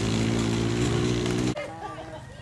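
An engine running at a steady idle with an even drone, cutting off abruptly about one and a half seconds in; a voice is heard faintly after it stops.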